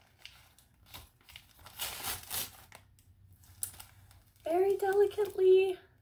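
Paper sleeve and plastic wrapping around a potted African violet rustling and crinkling in short bursts as the stuck sleeve is pulled off. Near the end comes a drawn-out wordless vocal sound from a woman.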